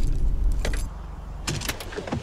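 Sound inside a parked car from a film soundtrack: a low rumble that drops away a little before halfway through, then several sharp clicks with a jingle near the end.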